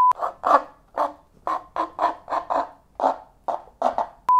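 A brief test-tone beep at the start. Then a taut string running from a plastic jar is rubbed, making about a dozen short raspy scrapes at an uneven pace.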